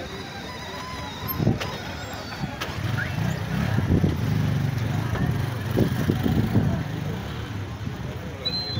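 Small motorcycle engines running on a dirt road, a low engine rumble that grows louder from about three seconds in and eases near the end, over crowd voices.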